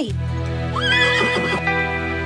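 A cartoon unicorn's whinny, one call that rises and then holds about a second in, over steady background music.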